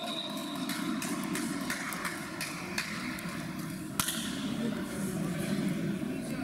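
Futsal being played in a sports hall: a steady, high whistle note cuts off under a second in, then scattered players' voices and knocks from the ball and feet, with one sharp ball strike about four seconds in.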